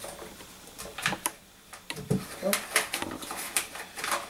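A handful of light, sharp clicks and taps of metal engine parts with paper rustling, as a wrist pin is pushed through a piston and the con-rod small end of a PM Tuning 54 mm top end to seat the piston.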